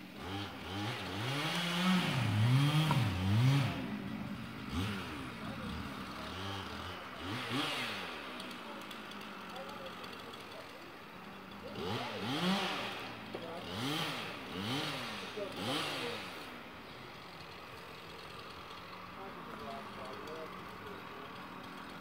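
Chainsaw revving up and dropping back again and again as it cuts into the base of a dead oak, heard from a distance. A run of revs comes in the first few seconds, and another cluster about halfway through.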